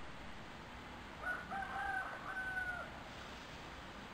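A rooster crowing once, faintly, starting about a second in and lasting about a second and a half, over low background hiss.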